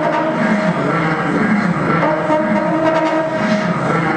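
Live experimental drone music: held trumpet tones layered over a steady buzzing drone from a battery-powered keyboard and electronics, the held notes shifting in pitch every second or so.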